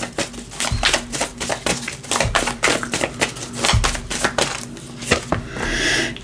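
A deck of tarot cards being shuffled by hand: a quick run of crisp card clicks, with a couple of low thumps as the deck is knocked. Near the end a card slides out and is laid on the table.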